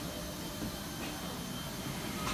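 Steady hum and hiss of an airliner's air systems at its open boarding door, with no distinct events.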